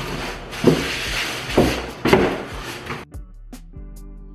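Packaging being handled: plastic wrap rustling and foam packing knocking against the carton, with several sharp knocks. It cuts off abruptly about three seconds in, and background music takes over.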